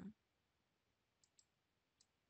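Near silence with a faint computer mouse click, two quick ticks about halfway through, as a settings dialog is applied and closed.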